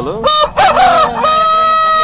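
Aseel game rooster crowing: the call rises sharply a fraction of a second in, breaks briefly, then settles into a long, steady held note near the end.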